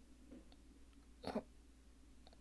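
Near silence: room tone, with one short, quiet "oh" from a man a little after a second in.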